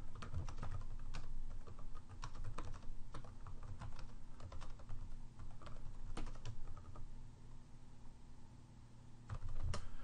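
Typing on a computer keyboard: a fast, uneven run of key clicks that thins out about seven seconds in, with a few more clicks near the end. A steady low electrical hum sits underneath.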